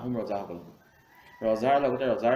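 A man's voice lecturing, with a short pause near the middle before he carries on.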